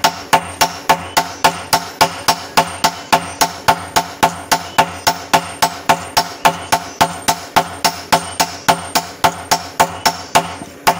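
A sledgehammer and a hand hammer take turns striking a red-hot golok blank forged from bearing steel on a small anvil, about four blows a second in a steady rhythm. Each blow gives a sharp metallic clang that rings briefly.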